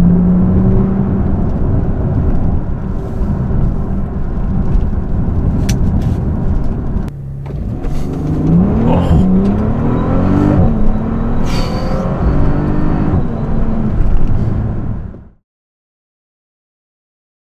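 2018 Bentley Continental GT's 6.0-litre twin-turbo W12 engine running steadily along with road noise, then heard from inside the cabin accelerating hard, its pitch climbing and dropping through several gear changes.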